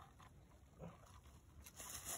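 Near silence: faint rustling and small clicks in dry leaf litter, growing a little louder near the end.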